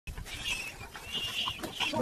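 Several brief high-pitched animal calls over a low rumble.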